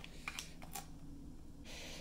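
Faint handling noise from a plastic drive adapter and its cables being picked out of a cardboard box: a few light clicks, then a short rustle near the end.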